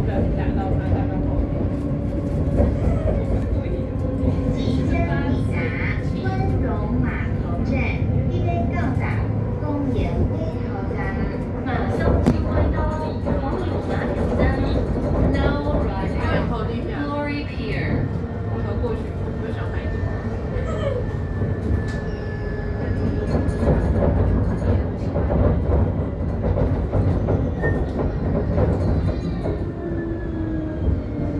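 Light rail tram running, heard from inside the car: a steady low rumble with motor tones and a thin whine partway through. People's voices are heard in the middle.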